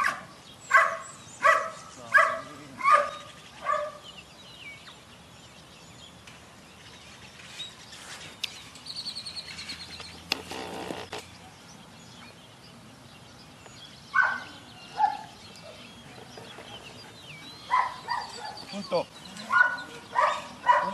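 Young Belgian Malinois barking in short, sharp, evenly spaced barks: five in quick succession at the start, two more about two-thirds of the way through, and another run near the end.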